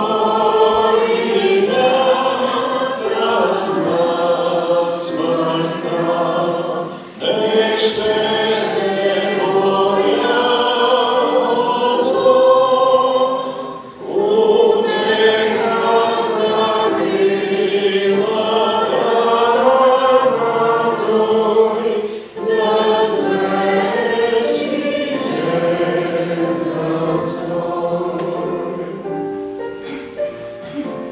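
Church congregation singing a hymn together, in phrases about seven or eight seconds long, each separated by a brief pause for breath.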